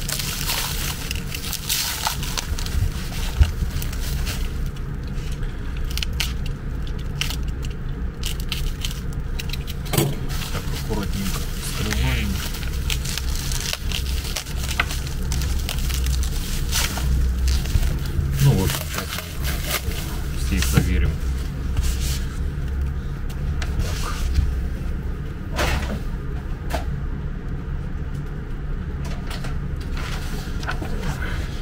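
Clear plastic wrapping being crinkled and torn off tubes of grease by hand, with many scattered sharp clicks, over a steady low hum.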